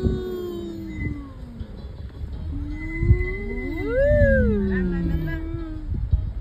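Long, slow gliding tones, two or more at once, rising and falling in pitch like whale song. The highest and loudest swell comes about four seconds in.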